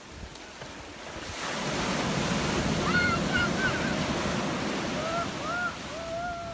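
Ocean surf: a wave breaks and its foam washes up the sand, swelling about a second in and easing near the end, with wind on the microphone. A few short, high rising-and-falling cries sound over the wash around the middle and again near the end.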